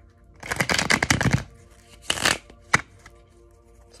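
A deck of tarot cards being shuffled by hand: a rapid run of card flicks starting about half a second in and lasting about a second, a shorter burst a little after two seconds, then a single sharp tap near three seconds.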